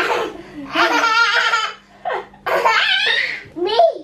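Toddler belly-laughing in high-pitched bursts, two of them about a second long, with shorter laughs at the start and near the end.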